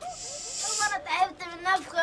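Hand-operated bicycle floor pump being worked, with air hissing for about the first second. The pump is broken.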